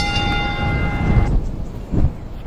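A steady pitched tone with several overtones, held for about a second and a half and then stopping, over a continuous low rumble.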